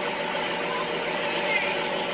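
Steady, even background noise with faint held tones from a music video's soundtrack, with no speech or beat.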